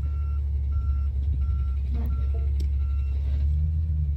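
Rear-loading garbage truck's back-up alarm beeping about one and a half times a second over the low, steady running of the truck's engine; the beeps stop about three seconds in.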